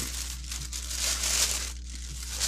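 Plastic packaging crinkling and rustling steadily as it is handled, a little louder midway.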